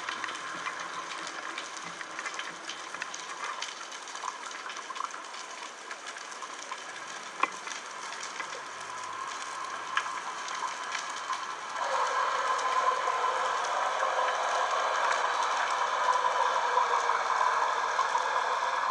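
Underwater ambience: a steady crackle of many tiny clicks with a few sharper ticks. About twelve seconds in, a louder rushing, bubbling water noise comes in as the camera rises toward the surface.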